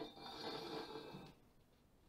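Faint scrape of a steel tube sliding inside a larger thick-walled steel tube, with a light metallic ring. It lasts just over a second and then stops; the two tubes are a close fit with little slack.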